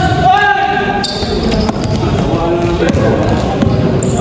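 A basketball bouncing on an indoor gym court with players' running, and a player's shout about the first second in, echoing in the large hall.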